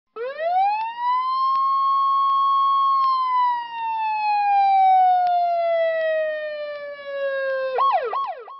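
A siren winding up over about a second to a steady wail, holding for a couple of seconds, then sliding slowly down in pitch, followed near the end by a few quick rising-and-falling yelps.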